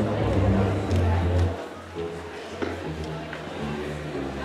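Slow foxtrot dance music played over a hall sound system, with a full bass for about the first second and a half, then lighter sustained notes.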